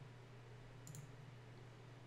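Near silence: room tone with a steady low hum and one faint computer-mouse click about a second in.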